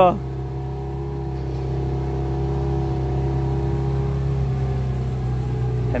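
Engine of a small motorboat running steadily at cruising speed, a constant drone with a few fixed tones.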